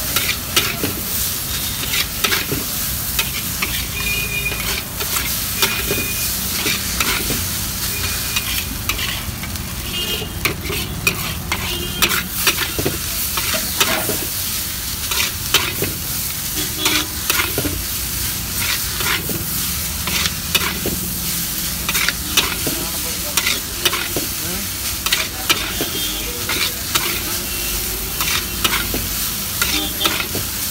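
Noodles sizzling in a hot wok while being stir-fried, with a metal spatula scraping and clacking against the wok in frequent sharp knocks over a steady frying hiss.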